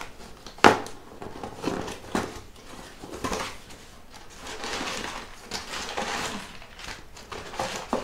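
Small cardboard gift box and its paper packing being handled and opened: paper rustling and crinkling, with a sharp knock a little under a second in.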